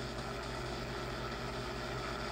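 Steady hiss with a low hum from a spirit-box app sweeping through FM and AM radio frequencies, played through a phone speaker, with no voice fragments between the sweeps.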